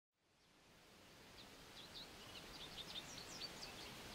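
Faint bird chirping fading in over a low hiss: many short, high chirps that begin a little before halfway and grow busier toward the end.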